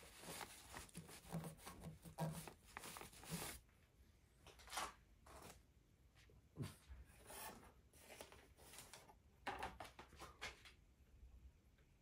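Faint cloth rag rubbing over painted metal in a quick run of short strokes, wiping off a spoiled painted lining stripe, followed by scattered rustles and small handling knocks that stop near the end.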